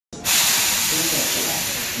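Loud, steady hiss of compressed air venting from the pneumatic brakes of a Hankyu 7000 series electric train as it stands at the platform after arriving, starting suddenly just after the beginning.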